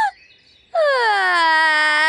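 A woman's loud, theatrical crying wail. After a brief pause, about three-quarters of a second in, comes one long high cry that slides down in pitch and is then held.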